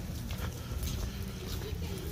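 Footsteps on wet stone paving, a run of irregular short clicks, over a low rumble of wind on the microphone.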